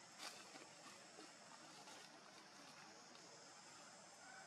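Near silence: a faint, steady outdoor background hiss with a few faint clicks, the clearest about a quarter second in.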